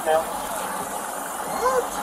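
Speech: a man's voice at the start and a short voiced sound near the end, over steady outdoor background noise.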